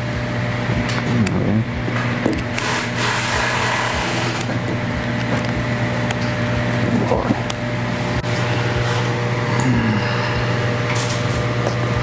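A steady low machine hum, with scattered light clicks and knocks from a USB flash drive being plugged into a laptop and the laptop being handled.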